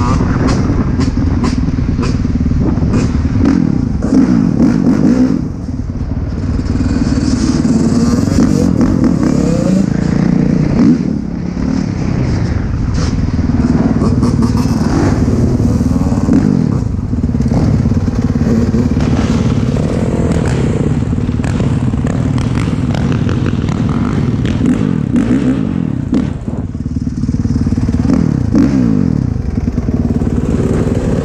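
Dirt bike engine running under way, its revs rising and falling again and again as the bike speeds up and eases off, with wind noise on the microphone.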